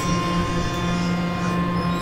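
Harmonium holding a steady sustained chord, its reeds sounding several pitches together without a break.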